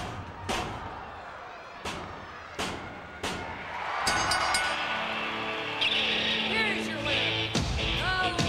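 Several sharp slaps on a wrestling ring mat, the last three evenly spaced like a referee's three-count. Music starts about halfway through.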